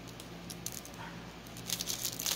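Faint handling noises from a cellophane-wrapped box being worked open: a few small clicks and rustles over a steady low room hum, with slightly more ticking near the end.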